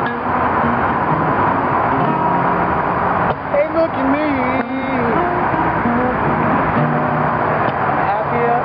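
Acoustic guitar being played in a blues song, with a man's voice singing a line of sliding pitch a little after three seconds in, over steady highway traffic noise.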